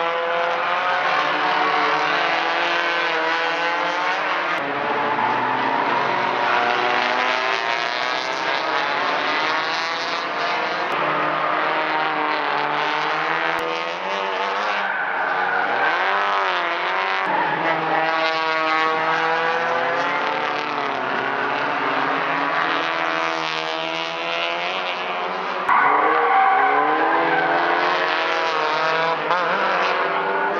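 Several small touring-car hatchbacks racing through a corner, their engine notes overlapping and repeatedly rising and falling in pitch as they slow for the turn and accelerate out. The sound gets louder about 26 seconds in.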